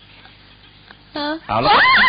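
A woman gives a loud, high-pitched shriek that sweeps up and down in pitch, starting about a second and a half in after a short spoken sound. It is a startled reaction to the fingertip touch that is passed off as an electric shock.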